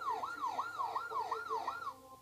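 Police car siren in yelp mode: a fast rising-and-falling wail repeating about three times a second.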